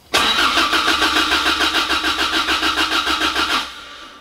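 Toyota 4A-GE four-cylinder engine turning over on the starter motor in a rapid, even rhythm without firing, stopping shortly before the end. No power reaches the fuel pump during cranking, so the engine gets spark but no fuel.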